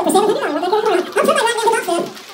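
Auctioneer's rapid bid-calling chant through a microphone and PA speakers, the voice rising and falling quickly with no clear words, breaking off near the end.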